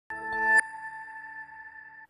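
TV news ident sting: a swelling electronic chord that rises to a peak and cuts off about half a second in, leaving a ringing chime tone that fades away.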